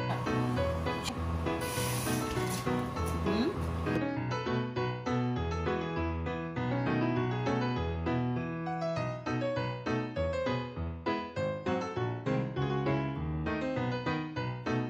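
Rice sizzling as it fries in oil in a pan, a steady hiss that cuts off suddenly about four seconds in, under background piano music that carries on alone.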